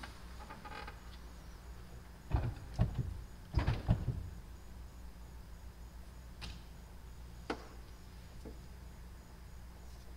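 Handling noises at an organ console as the organist gets ready to play: a cluster of knocks and thumps about two to four seconds in, then two sharp clicks about a second apart, over a steady low hum.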